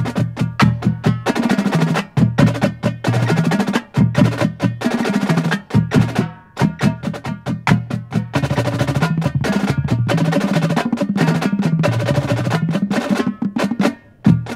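Marching drumline of snare drums, tenor drums and bass drums playing a warm-up exercise together: fast, dense stick strokes over low drum notes stepping up and down, with short breaks between phrases.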